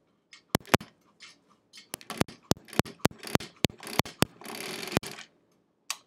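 Sewing machine stitching slowly, stitch by stitch: a sharp click with each needle stroke, two isolated clicks at first, then a run of about three to four clicks a second, followed by about a second of rustling noise.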